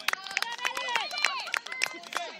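Several women's voices shouting and calling across an outdoor football pitch, with many sharp short clicks scattered through.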